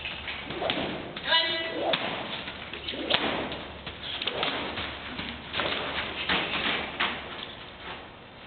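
Hoofbeats of a loose horse walking on the soft dirt footing of an indoor arena: a series of dull, irregular thuds.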